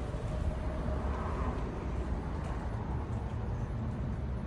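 Steady outdoor background noise, mostly a low rumble, with no distinct events.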